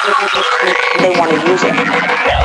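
Dark psytrance breakdown with the kick and bass dropped out: a fast stuttering, croak-like synth pulse of about ten hits a second, then a low held synth tone with gliding squelches in the second half.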